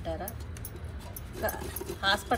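Fresh coconut rasped against a stainless steel box grater in short scraping strokes, with light metallic clinking.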